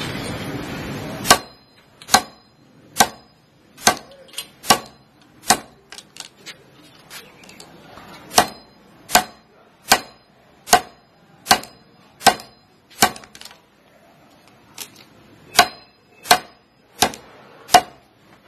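Nylon tactical belt clip for a knife sheath snapped shut again and again by hand: about twenty sharp plastic clicks, just under one a second, with two short pauses. It is a repeat-cycle test of the clip's spring, which still snaps back crisply.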